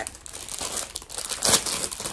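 Plastic packaging bag crinkling and rustling as a garment is handled, with a louder crackle about one and a half seconds in.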